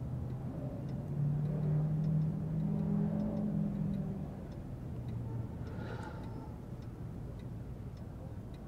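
A low, steady hum that swells about a second in and fades after about four seconds, over faint, regular ticking.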